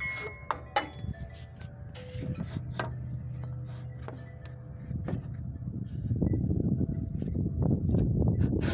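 Metal handling on a table saw's aluminium top: a few sharp clinks and clanks, each with a brief ringing tone, as a steel spring clamp is moved about. In the last few seconds a rougher rushing noise builds up.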